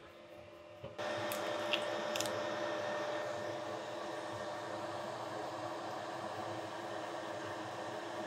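Steady fan hum and rushing air from inside an enclosed diode laser engraver, starting suddenly about a second in, with a faint steady tone running through it. A few light clicks follow shortly after it starts.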